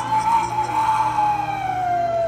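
A man's long, loud call through cupped hands: one held note that slowly falls in pitch.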